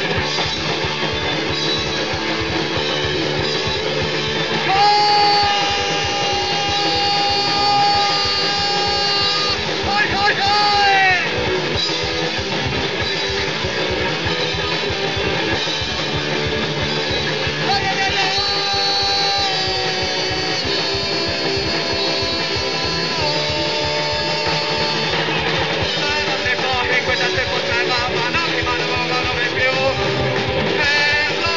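Punk hardcore band playing live: distorted electric guitars, bass guitar and fast drumming, with long held high notes twice.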